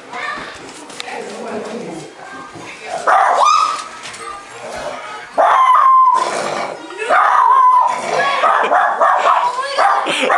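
Terrier-mix puppy barking repeatedly at children, in loud bursts a few seconds in and again past the middle. The barking is the sign of the dog's hostility to the children.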